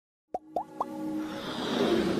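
Logo intro sound effects: three quick rising plops about a quarter second apart, followed by a swell of electronic music building up.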